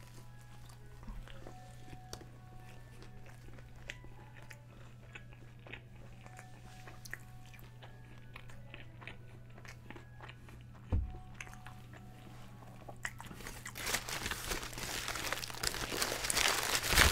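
Crunchy bites and chewing of a Taco Bell Quesalupa's fried chalupa-style shell, quiet and close, with small crackles throughout. A knock comes past the middle, and near the end a louder crinkling rustle builds.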